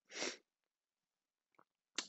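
A single short, sharp breath noise from the narrator near the start, in otherwise near silence.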